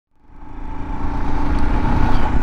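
2018 Royal Enfield Himalayan's single-cylinder engine running at a steady speed on the road, with wind and road noise, fading up from silence over the first second.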